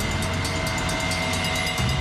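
Dramatic background music or a sound-design bed: a steady, loud droning rumble with a few held tones and fast, even ticking over it.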